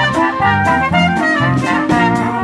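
A small live band playing: trumpet and trombone lines over a drum kit keeping a steady beat.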